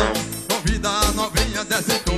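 Live piseiro (Brazilian forró) music in an instrumental passage: a melody with bending notes over a steady bass beat of about two beats a second.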